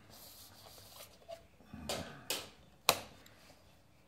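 Clear plastic set square being slid across drawing paper on a drafting board and lifted away: a soft scrape, then a few clicks and knocks, the sharpest about three seconds in.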